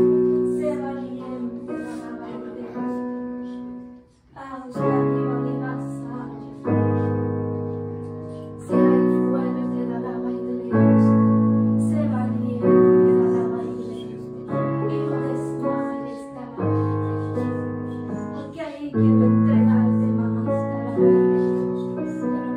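Soft piano music of slow, held chords. A new chord is struck about every two seconds and left to fade.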